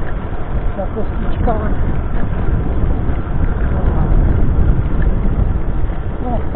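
Electric scooter rattling and shaking as it rolls over cobblestones, mixed with wind rushing over the handlebar-mounted microphone: a loud, steady, fluttering low rumble.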